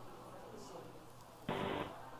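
Faint steady hiss of a launch-broadcast audio feed, then a brief burst of voice over the radio loop about one and a half seconds in.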